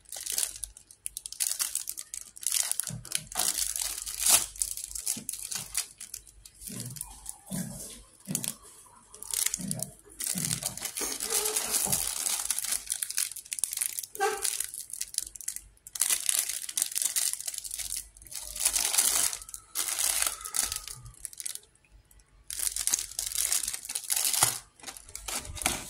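Clear plastic bread wrappers crinkling and rustling in irregular bursts as wrapped buns are handled and shuffled in a cardboard box, with a few soft low knocks in the middle.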